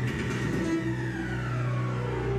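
Live electronic synth music: a synth line glides steadily downward in pitch over a held low bass note.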